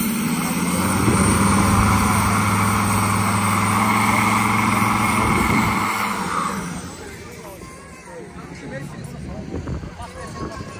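A drag car's engine held at steady high revs for about six seconds, then dying away.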